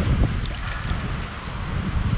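Wind buffeting the microphone in low, uneven gusts over a soft wash of shallow seawater.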